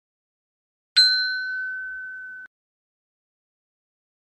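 A single bell-like ding sound effect, struck once about a second in, ringing on one steady tone for about a second and a half before cutting off abruptly.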